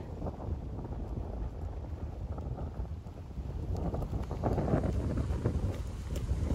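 Wind buffeting the microphone: a steady low rumble, a little louder in the second half, with a few faint ticks.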